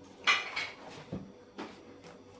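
A knife clinking against a small ceramic plate: one sharp, ringing clink about a quarter-second in, followed by a duller knock and a lighter tap.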